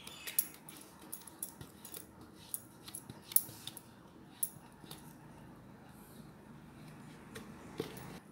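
Scattered light clicks and clinks over faint room tone: a dozen or so sharp, brief ticks at irregular intervals, the loudest a little after three seconds in.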